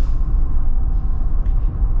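Steady low rumble of road and drivetrain noise inside the cabin of a 2024 Jeep Wrangler Rubicon 4xe plug-in hybrid cruising at about 30 mph.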